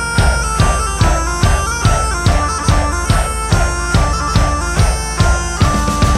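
Live medieval folk music: bagpipes playing a melody over a steady drum beat, about two and a half beats a second.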